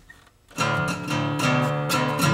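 Strummed guitar music starts suddenly about half a second in, after near silence, and carries on with repeated chords.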